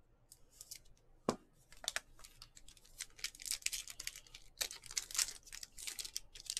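Trading cards and their clear plastic being handled: a run of quick, scratchy rustles and crinkles of plastic, with one sharp click a little over a second in.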